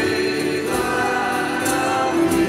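Live sertaneja offertory song: voices singing long held notes over instrumental accompaniment, amplified through a PA.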